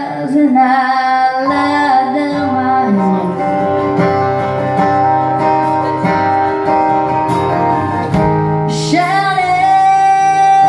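Live full band playing a song: strummed acoustic guitar, keyboard, drums and electric guitar. A woman sings over it at the start and again near the end, with an instrumental stretch of held chords between.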